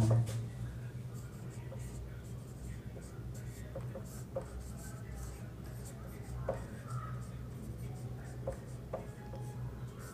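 Marker pen writing on a whiteboard: faint scratching strokes with a few light ticks, over a low steady hum.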